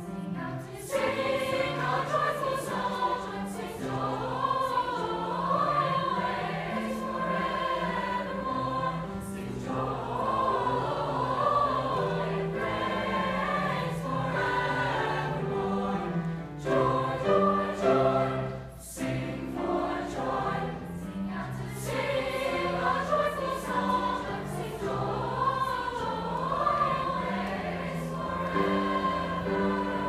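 A school choir of teenage boys and girls singing together under a conductor, in sustained phrases with brief pauses between them.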